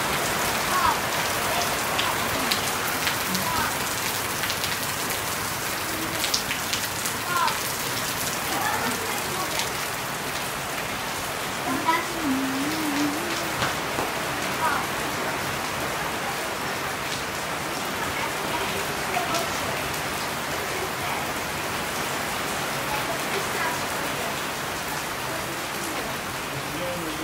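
Steady monsoon rain falling on foliage and the ground, with scattered sharper drips standing out now and then.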